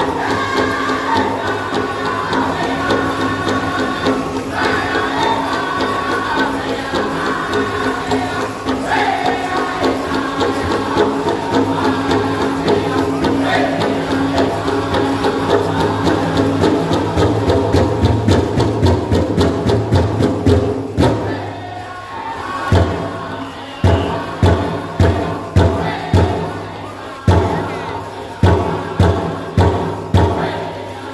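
Powwow drum group singing a jingle dress dance song in high voices over a fast, steady drumbeat. About two-thirds through, the singing drops away and the drum plays loud separate hard beats.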